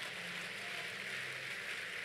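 Steady background noise of a large crowded auditorium: an even hiss with a faint low hum underneath.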